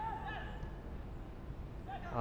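Faint shouts from players on a football pitch, mostly in the first half-second, over a steady low background rumble.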